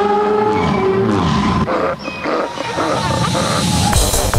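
Psychedelic trance track in a breakdown: the kick drum drops out, leaving held synth tones and gliding synth effects, with a short dip in level about two seconds in.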